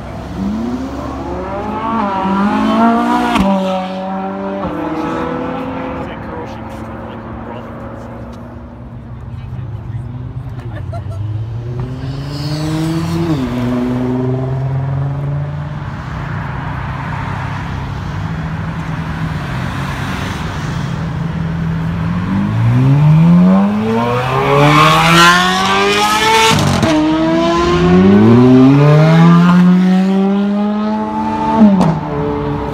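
Sports car engines accelerating past one after another, with rising revs and upshifts. Near the end a car pulls hard through several gears, each rising sweep broken by a drop in pitch at the shift; this is the loudest part.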